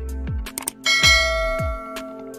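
Electronic background music with a steady beat and deep bass; about a second in, a bright bell chime rings out and fades slowly, the notification-bell sound effect of a subscribe-button animation.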